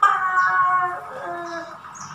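A woman's voice drawn out into one long vocal note, the word 'baht' stretched out, holding a slightly falling pitch and fading after about a second and a half.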